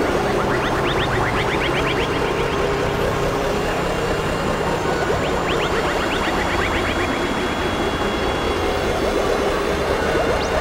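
Dense experimental electronic noise collage of layered music: a steady drone under a thick wash of noise, with runs of rapid rising chirps near the start and again past the middle.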